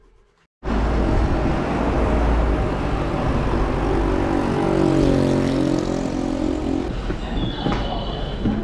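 Loud vehicle rumble that cuts in suddenly about half a second in, with several falling tones in the middle.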